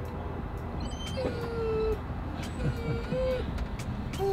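A dog whining twice: a long, slightly falling whine about a second in, then a shorter one that rises at its end, over the low rumble of a vehicle interior.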